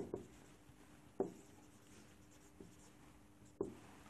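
Marker pen writing on a whiteboard, faint, with a few light taps of the tip on the board about a second apart.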